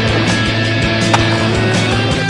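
Soundtrack music with skateboard sounds mixed over it: the board rolling on pavement, and one sharp clack of the board about a second in.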